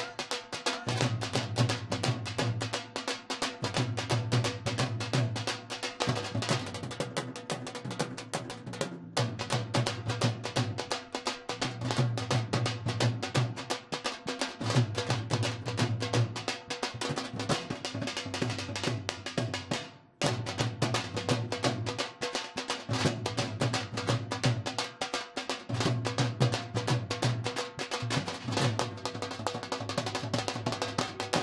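Several Punjabi dhol drums played fast with sticks in a live band, over a drum kit and a low bass line that repeats in a pattern about every two seconds. The music breaks off for an instant twice, about nine and twenty seconds in.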